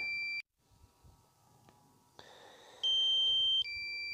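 Electronic two-note alert beeps from a DJI Mavic Air's flight controls as return-to-home activates: a low steady beep cuts off just after the start, and after a pause a higher beep and then a lower beep of almost a second each follow near the end.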